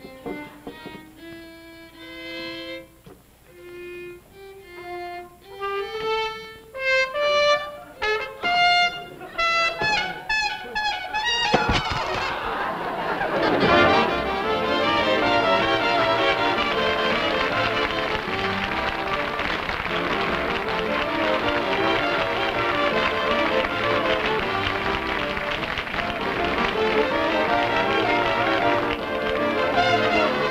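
A violin played solo, single drawn-out notes that climb steadily higher and come faster and faster. About eleven seconds in, a studio orchestra with brass comes in loudly and plays on.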